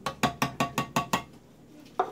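A tin can of tomato sauce knocked about eight times in quick succession over a ceramic slow cooker crock, a run of light metallic clinks, to shake the last of the sauce out. The clinks stop a little over a second in.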